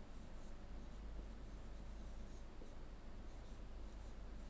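Faint strokes of a pen writing on an interactive board, over a steady low hum.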